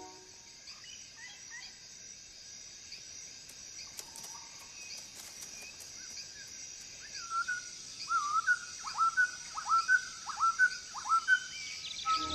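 Forest ambience with a steady high hiss and scattered faint bird chirps. From about seven seconds in, a quick series of louder bird calls, each swooping down and back up in pitch, about two or three a second.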